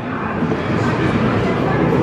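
Busy arcade room noise: background voices mixed with electronic sounds from the running claw machine and nearby games, steady with no single event standing out.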